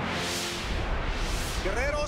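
A rushing transition whoosh that swells and fades over about a second and a half. A bass-heavy music track starts under it, with a wavering lead line coming in near the end.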